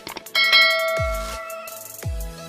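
A bright bell ding, the notification-bell sound effect of a subscribe animation, rings out about a third of a second in and fades over about a second. It plays over electronic music with a deep bass hit that drops in pitch.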